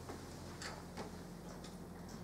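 Faint, irregular ticks and scratches of pens writing on paper and papers being handled, over a steady low hum in the room.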